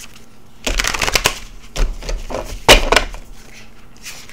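Deck of tarot cards being shuffled by hand: a run of rustling, slapping strokes that starts about a second in, with a few louder strokes, and trails off shortly before the end.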